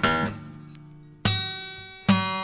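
Solo acoustic guitar playing slow plucked notes: a chord at the start rings and dies away, then a fresh chord is struck about a second and a quarter in and left to ring.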